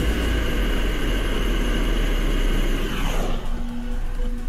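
Two propane burner torches roaring steadily while heating a steel lag bolt. A little after three seconds in, the roar ends in a falling swoosh.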